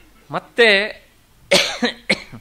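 A person clearing their throat and coughing: a short voiced sound, then a harsh cough about one and a half seconds in.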